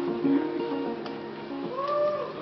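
Hollow-body electric jazz guitar playing held notes, with one note bent up and let back down near the end.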